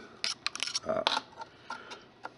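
Thin 18-gauge steel wire being handled and crossed over, its strands giving a quick run of light metallic clicks in the first second and a couple more near the end.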